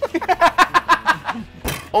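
Men laughing, a quick run of ha-ha pulses that dies away about a second and a half in. A single sharp knock follows.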